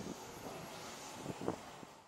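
Outdoor city ambience by a harbour: a steady hum of distant traffic with a few brief louder sounds, the clearest about a second and a half in, tapering off near the end.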